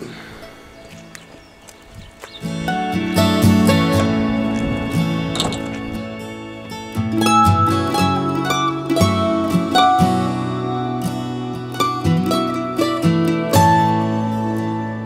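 Instrumental background music with plucked-string notes over held tones, starting about two and a half seconds in after a short stretch of quieter ambient sound.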